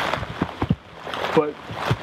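Steady rain falling, heard as an even hiss with a few sharp taps of drops, and a single spoken word near the end.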